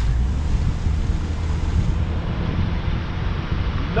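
Steady road noise of a car driving along, a low rumble with wind buffeting the microphone.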